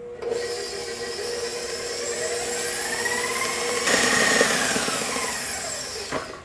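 Electric stand mixer running steadily, its beater churning thick cream cheese cheesecake filling in a stainless steel bowl. About four seconds in the sound abruptly changes and grows louder.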